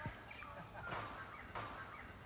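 Birds calling in the outdoor background: several short, high, curving calls over a faint haze of ambient noise.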